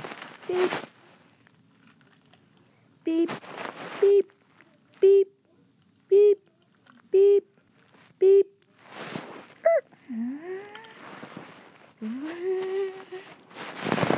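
A boy's voice imitating a car horn with short 'beep' sounds, six of them about a second apart, then two rising vocal whoops near the end.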